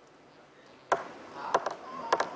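Near quiet, then a sharp knock just before a second in, followed by a couple of quieter clicks.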